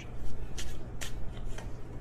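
Tarot cards being shuffled by hand: an irregular papery rustle of the deck with a couple of sharper card flicks.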